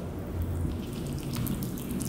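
Holland lop rabbit eating a grape close to the microphone: wet chewing and small clicking mouth sounds, more of them in the second half.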